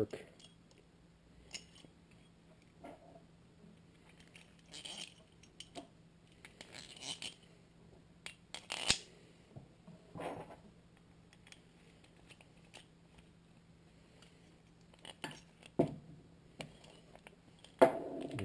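Metal tool parts being handled and fitted together: a steel bolt, a pipe spacer, washers and bronze thrust bearings slid and threaded onto a C-clamp's screw, giving scattered light clicks and short scrapes. The loudest is a sharp click about nine seconds in.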